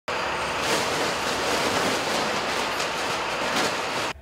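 Curb Sorter recycling truck tipping its load: mixed recyclables pour out of the raised bin in a steady clattering rush of falling material, with a low rumble underneath.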